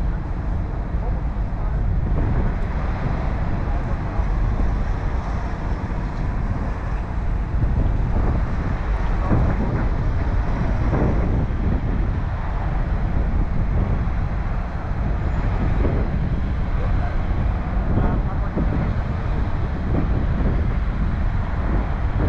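Steady outdoor noise: wind on the microphone over a low hum of vehicles or traffic, with faint indistinct voices at times.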